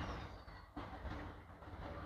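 Low rumble and soft rustling surges about once a second from a handheld phone being carried through a cattle shed, with a faint high whistle falling in pitch about half a second in.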